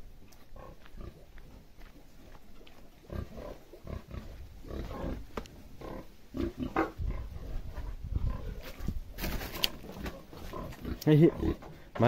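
Domestic pig grunting over and over in its pen, starting about three seconds in and growing louder towards the end.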